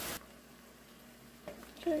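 Ground pork sizzling in a frying pan, cut off abruptly a moment in. A quiet stretch follows with the pan under its steel lid, then a light knock near the end as the lid handle is taken.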